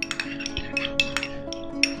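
A metal spoon stirring a liquid mixture in a small glass bowl, clinking against the glass in a quick run of irregular light clicks. Soft acoustic guitar music plays underneath.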